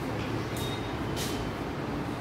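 Marker strokes on a whiteboard, two short scratchy strokes with a faint squeak, over a steady low rumble in the room.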